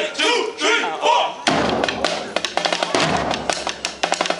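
A voice calls out in short rising and falling shouts, then about a second and a half in a drumline of snare drums and marching bass drums starts playing a fast, dense beat.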